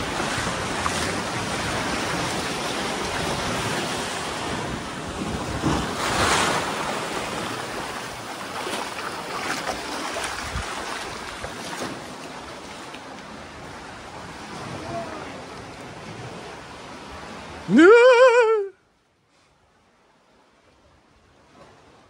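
Surf washing in over a sand beach, a steady rush of water with wind on the microphone. About eighteen seconds in, a loud, short cry rises in pitch and wavers, then the sound cuts off suddenly.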